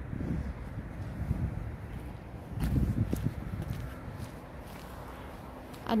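Wind buffeting the microphone as a low, uneven rumble, with a stronger gust about halfway through.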